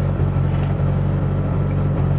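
Rally car engine idling steadily while the car stands still, heard from inside the cockpit.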